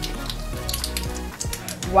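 Small plastic toy packaging crinkling and crackling as it is picked open by hand, a run of short crackles, over steady background music.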